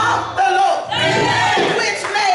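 A woman preaching at full voice into a handheld microphone, shouting phrases in an impassioned, sing-song style through the church sound system.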